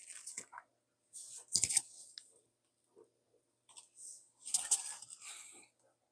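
Handling noise of a USB-C cable being worked into a laptop's charging port: three spells of scraping and rustling with sharp clicks, one about a second and a half in and another near the end.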